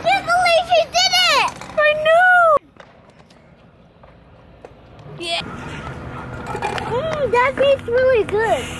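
High-pitched, excited voices calling out, cut off abruptly about two and a half seconds in. A few seconds of quiet outdoor background follow, then more high-pitched voices near the end.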